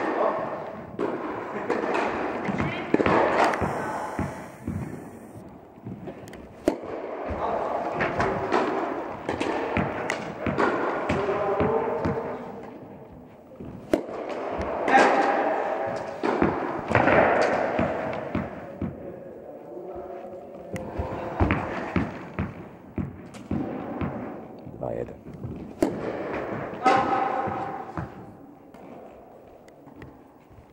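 Tennis ball being struck by rackets and bouncing on the court during play, heard as a string of short sharp knocks, with people talking throughout.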